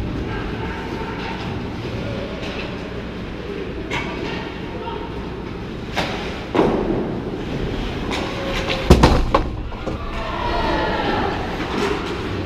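Ice hockey play in an echoing rink: a steady rumble of skates on the ice with sharp clacks of sticks and puck, the loudest about nine seconds in, and players' voices calling out.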